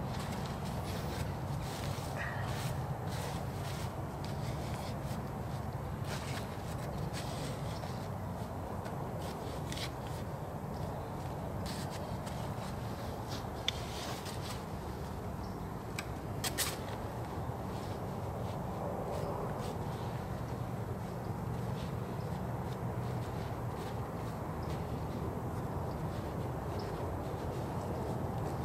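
Soft scraping and scattered light clicks of a hand digging tool cutting a trap bed into wet soil, over a steady low background noise.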